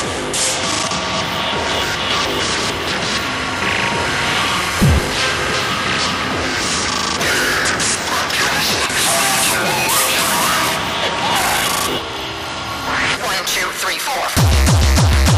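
Beatless intro of a hardcore electronic track: a dense, noisy build of synth textures and sampled sound effects, with a sudden low boom that falls in pitch about five seconds in, and vocal samples mixed in.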